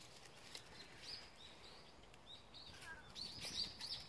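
Faint, high chirping of small birds: a string of short calls spread through the quiet, a little more frequent near the end.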